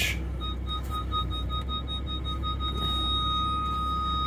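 Lamborghini Huracan's parking sensors beeping rapidly as the car closes in on an obstacle, the beeps running together into a continuous tone near the end as the gap gets very small, over the low, steady running of its V10 engine.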